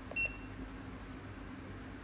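One short, high electronic beep from the HN685 portable metal hardness tester's keypad as a key is pressed to step through the material setting.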